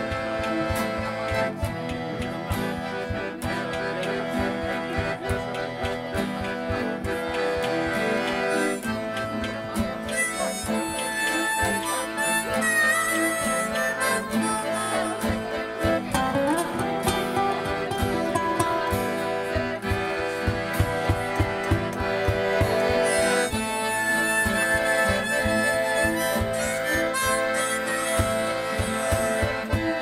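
Live acoustic folk music: a harmonica plays the melody over acoustic guitar and accordion, with a steady rhythmic pulse underneath.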